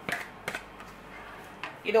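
Two light clicks as a spatula and plastic container knock against a frying pan while the last of the sauce is scraped in, one at the start and one about half a second later.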